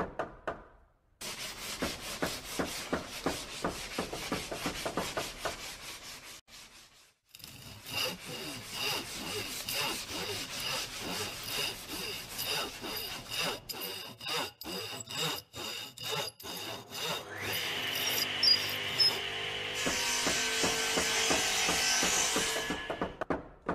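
Hand saw cutting through wood in repeated back-and-forth strokes, with a short break about six seconds in. Music begins to come in over the last few seconds.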